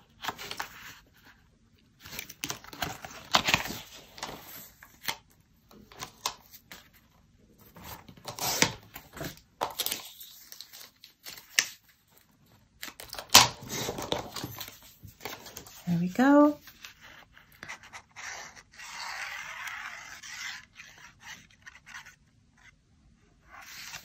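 Paper crafting at a desk: patterned paper and cardstock rustling and tapping, a pencil marking it, and a sliding paper trimmer cutting a strip, with a steady scratchy cut of a couple of seconds about three-quarters through. A brief hummed voice sound comes in about two-thirds of the way in.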